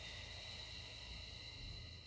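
A faint, long exhale lasting about two seconds, heard as a steady hiss, taken during a held seated stretch.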